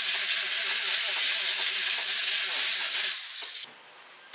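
Electric rotary polisher with a foam pad running against the face of a wood log slice: a loud, steady hissing whir whose pitch wavers slightly as the pad is pressed and moved. It cuts out about three seconds in and winds down briefly.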